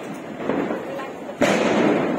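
Diwali fireworks going off: a sudden loud burst about one and a half seconds in that dies away slowly, while the fuse of a ground firework tube is burning.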